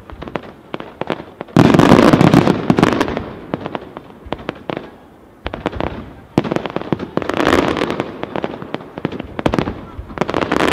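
Castillo aerial fireworks display: dense crackling and sharp shell reports. A sudden loud salvo comes about one and a half seconds in. It eases off toward the middle, then another heavy run of bursts starts at about six and a half seconds.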